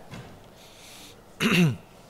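A man clears his throat once into the microphone, a short burst about one and a half seconds in.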